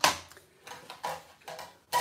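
A sharp knock right at the start as hard stamping tools are handled on the work surface, followed by a few faint paper-handling sounds and a small click near the end.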